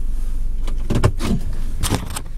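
Steady low rumble of a car cabin on the move, with rubbing and bumping from a handheld camera being turned around, a jacket sleeve brushing over it about a second in and again near the end.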